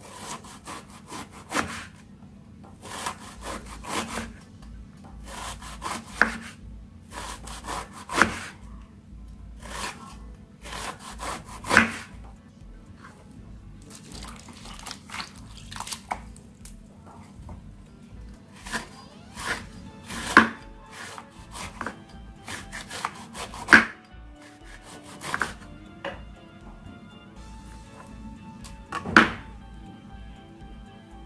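A kitchen knife slicing through a raw banana blossom on a wooden cutting board, in short sawing strokes repeated every second or two, some ending in a sharper knock of the blade on the board. Faint background music comes in near the end.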